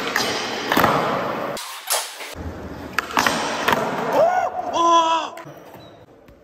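Skateboard wheels rolling on a concrete floor, with sharp clacks of the board and trucks hitting a metal flat rail and the ground. Near the end a person lets out a drawn-out shout.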